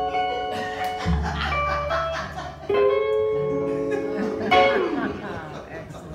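Upright bass, acoustic guitar and archtop electric guitar playing an instrumental country/bluegrass passage. A strong chord about four and a half seconds in then dies away.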